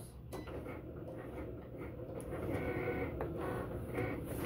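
Plastic scoring tool drawn along the groove of a paper trimmer with its blade removed, creasing envelope paper: a faint, steady scraping with paper rustling, a click just after the start and a slightly louder stretch a little past halfway.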